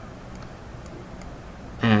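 Quiet room tone with a few faint, short clicks from a computer mouse being worked. A man's voice begins near the end.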